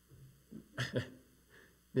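A person's brief, indistinct vocal sound, two short bursts in a reverberant room.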